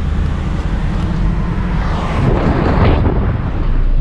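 Road and engine noise of a Volvo XC90 heard from inside its cabin while driving: a steady low rumble, with a rush of noise that swells about two seconds in and fades by about three.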